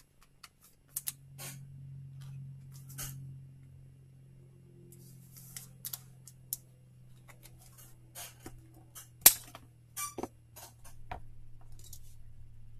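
Scattered light clicks and plastic rustles of a trading card being handled and slid into a clear plastic sleeve, with one sharper click about nine seconds in.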